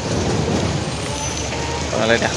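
Road traffic noise: a motor vehicle passing on the road, a steady rush of engine and tyre noise with a low rumble.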